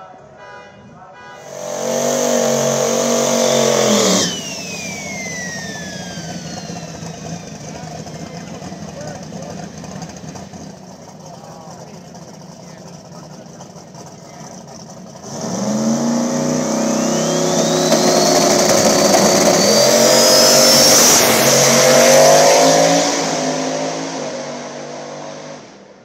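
Drag race car engine revving hard for a few seconds, then cutting off abruptly as a high whine falls away. After a quieter spell it runs at full throttle again for about ten seconds, a high whine rising in pitch over it, and fades near the end.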